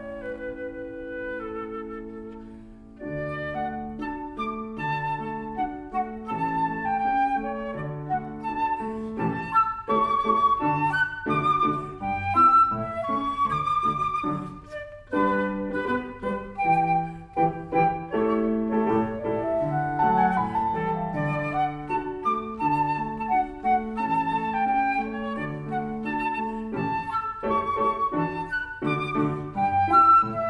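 Flute and grand piano playing Romantic-era salon-style variations. A held chord dies away, then about three seconds in the piano starts a steady rhythmic accompaniment under quick, running flute passages.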